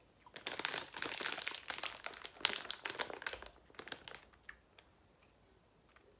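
Plastic sweets bag crinkling as it is handled, a dense crackle for about four seconds that thins out and stops.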